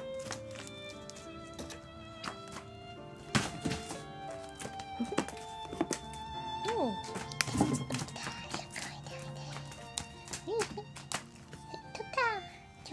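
Background music with steady held notes, over sharp thuds and taps of cats jumping and landing on a wooden floor as they chase a wand toy. The loudest knock comes about three and a half seconds in.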